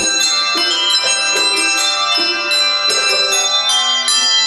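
A handbell choir ringing a melody in chords: struck handbells sound in overlapping, sustained notes. A new group of notes comes in every half second to a second, and each one rings on under the next.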